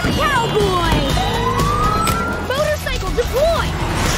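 Animated emergency-vehicle siren wailing, rising in one long sweep from about a second in, over vehicle sounds and trailer music, with short vocal exclamations.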